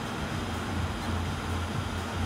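A 1200-watt ozone generator rig running at full power: a steady low hum under an even hiss.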